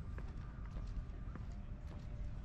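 Footsteps on a wooden plank boardwalk, a knock about twice a second, over a steady low rumble.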